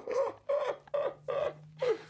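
A woman laughing hard in short, high-pitched repeated bursts, with a man laughing along.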